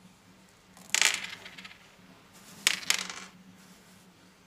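Small hard candy-coated chocolates clattering onto a hard tabletop in two short bursts, one about a second in and another just before three seconds made of two quick clicks.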